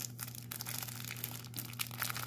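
Plastic bag crinkling and rustling in the hands as the bagged parts of a model display stand are handled: a run of irregular small crackles over a low steady hum.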